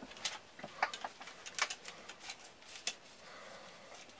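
Light, irregular clicks and taps of a hard Kydex plastic knife sheath and its shoulder rig being handled and set down, about a dozen in the first three seconds.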